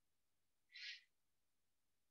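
Near silence, with one brief faint hiss a little under a second in.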